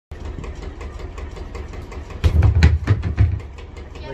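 A kick landing on a vinyl karate punching bag: one heavy thud a little over two seconds in, followed by three or four weaker thumps within the next second. Before it, a steady low mechanical running sound with rapid regular ticking.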